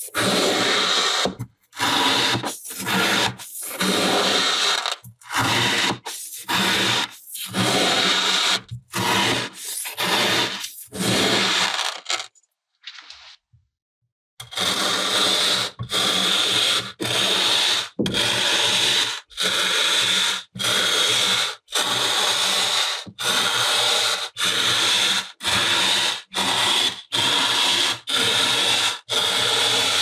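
Kinetic sand being worked by hand in repeated rough, gritty strokes, about one and a half a second: first a knife slicing through the packed sand. After a brief silence near the middle, a plastic stamping tool is pressed into the cut sand again and again.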